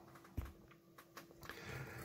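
Quiet bench sounds of a small circuit board being handled and lifted out of a bench vise: a soft knock about half a second in and a few faint clicks, over a faint steady hum.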